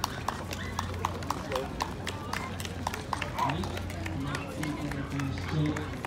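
Running footsteps of dog handlers' shoes on asphalt: quick, irregular sharp taps, several a second, with a steady low hum underneath.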